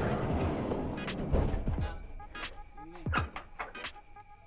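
A van's sliding side door rolling open along its track: a rolling noise that fades out over about two seconds.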